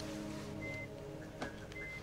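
Hospital patient monitor beeping: short high single-tone beeps about once a second, two of them here, over a low steady hum, with a faint click midway.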